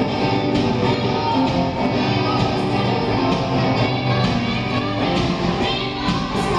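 Live band music: electric guitar playing over a steady beat, loud and continuous.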